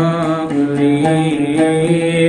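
A man chanting a Coptic hymn melody in long held notes, with an oud plucked in quick repeated notes beneath.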